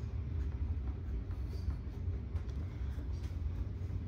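A thin clay coil being rolled out under the palm on a canvas-covered board: soft, even rubbing over a steady low hum.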